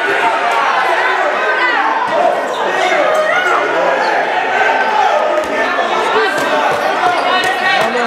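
Many voices of players and spectators calling and chattering, echoing in a large sports hall, with a handball bouncing on the wooden court now and then.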